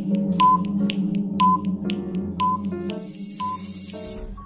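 Countdown timer sound effect: a short high beep about once a second over background music, as a quiz answer timer counts down from five.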